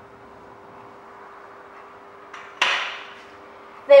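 A whiteboard marker clacks once, sharply, about two and a half seconds in, with a short ring after it. A faint steady hum runs underneath.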